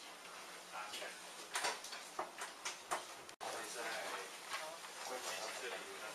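Indistinct voices in a lecture hall, with scattered sharp clicks and knocks, mostly in the first half. The sound cuts out for an instant a little past the middle.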